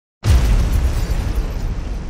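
A cinematic explosion-style boom sound effect hits suddenly just after the start, then a deep rumble slowly fades away.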